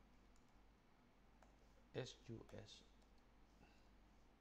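Faint, scattered clicks of computer keyboard keys as a web address is typed.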